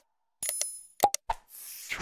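Interface sound effects of an animated subscribe button: a mouse click, a short bright bell ding, two more clicks, then a soft whoosh near the end.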